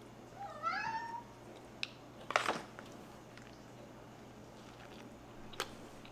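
A cat meows once, a short call that dips and then rises in pitch about half a second in. A brief sharp noise follows about two seconds later.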